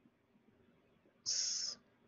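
Near silence, then a single short high hiss lasting about half a second, beginning a little past the middle.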